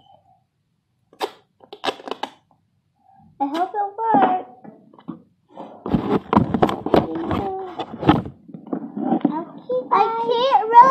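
A child's voice making sounds without clear words, with pitch that slides up and down, after a few short clicks between one and two seconds in.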